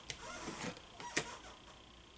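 Tarot cards being handled on a table: a quiet rustling of cards, with one short sharp click a little past a second in as a card is pulled or set down.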